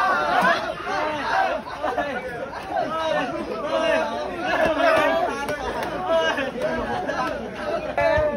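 Many young voices talking and shouting over one another at once: the excited chatter of a group crowded together.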